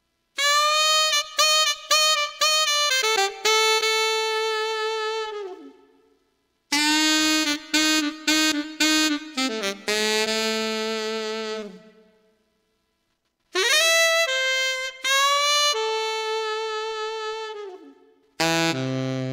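Keyboard saxophone voice playing three short phrases, each a run of quick detached notes ending on a long held note that sags down in pitch as it fades. The phrases are separated by gaps of about a second, and the equalizer is still set flat.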